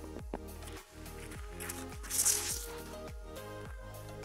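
Background music with a steady beat of about two a second, with a short burst of hiss about two seconds in.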